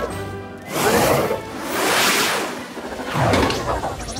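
Cartoon soundtrack: background music with three swelling whoosh sound effects, about a second apart.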